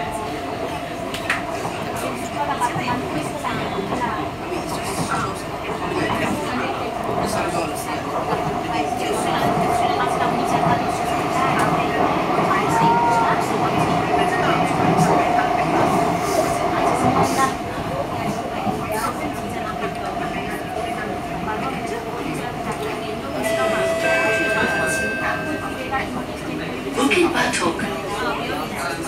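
Inside a C151B metro train running on elevated track: steady rumble of wheels on rail with a steady whine underneath. It grows louder from about ten to seventeen seconds in, then eases. A few brief high-pitched tones sound a little before the end.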